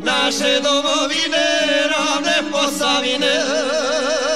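Izvorna folk song from the Posavina region: male voices singing a chant-like sung phrase. Near the end a violin with a wide, even vibrato comes in.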